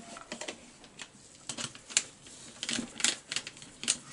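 A hand ratchet clicking in short, irregular runs as the screws holding a chainsaw's newly fitted cylinder are tightened down.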